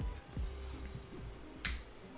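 Computer keyboard keystrokes, with one sharp click about one and a half seconds in as the loudest sound, over faint background music.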